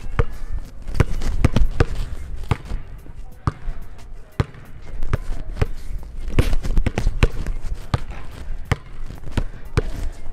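Basketball dribbled hard on a wooden gym floor at full speed, a quick run of between-the-legs bounces and crossovers at roughly two bounces a second, unevenly spaced as the speed changes.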